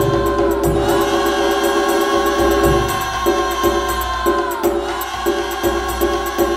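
Instrumental Vietnamese Tết spring music: a held high melody note that slides down about a second in and again near the end, over sustained chords, with light percussion in the second half.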